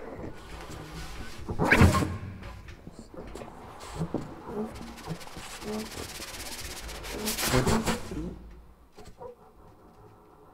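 Large improvising jazz orchestra playing sparse free-improvised sounds: scattered short low notes with noisy, breathy bursts, the loudest about two seconds in. A hissing swell builds and peaks around seven and a half seconds, then dies away to quieter scattered sounds.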